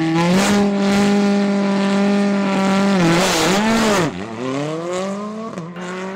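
Hyundai i20 R5 rally car's turbocharged 1.6-litre four-cylinder engine held at steady high revs for about three seconds. The revs then waver and dip as the car launches, and the note climbs steadily through a gear change, with another shift near the end.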